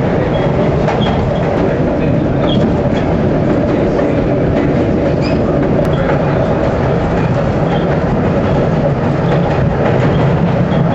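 Subway train running along the tracks, heard from inside the front car: a steady, loud rumble and rattle of wheels on rail, with faint short high squeaks now and then.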